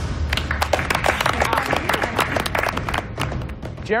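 A group of people clapping, many sharp claps close together, over background music with a low bass, both starting suddenly.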